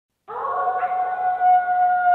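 A wolf's long howl, held on one steady pitch, rising out of silence about a quarter second in. It sounds muffled.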